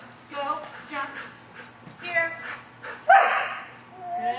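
A dog barking and yipping in short, repeated calls, with the loudest, harshest bark about three seconds in.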